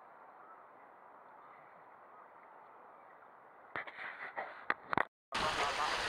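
Faint steady water noise around a sea kayak, then a few sharp knocks about four seconds in. After a brief drop-out, loud rushing wind and waves on the microphone begin near the end.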